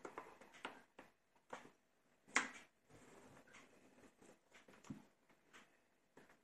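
Faint, scattered taps and scrapes of chopped garlic being pushed by hand off a wooden cutting board into a small glass jar, with one louder click about two and a half seconds in.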